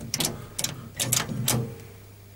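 Push buttons in an old lift car being pressed repeatedly, a run of about five sharp clicks while the car does not respond: the lift is stuck.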